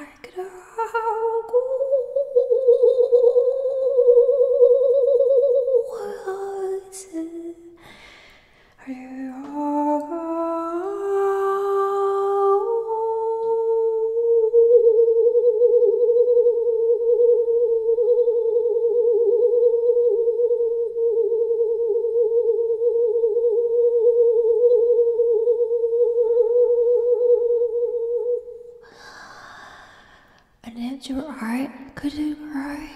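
A woman's voice humming long, wavering held notes. After a first note lasting a few seconds and a short break, the pitch climbs in small steps, then settles into one long held note of about fifteen seconds that cuts off near the end.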